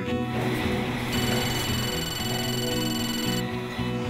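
Background music with sustained tones. A bright, hissy high layer comes in about a second in and stops about two seconds later.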